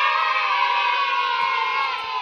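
A long, high shout of several voices held on one note, falling slightly in pitch. Its narrower sound, unlike the speech around it, marks it as an edited-in sound effect.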